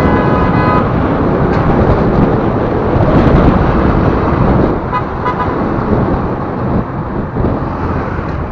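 Heavy road and wind noise from a vehicle travelling at speed on a highway alongside trucks. A vehicle horn sounds for the first second or so, and two short horn beeps come about five seconds in.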